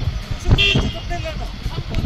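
People talking over a low background rumble, with a brief high-pitched sound about half a second in.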